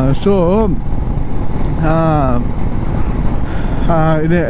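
Steady wind buffeting and motorcycle road noise while riding at speed, with a man's voice speaking briefly twice, near the start and about two seconds in.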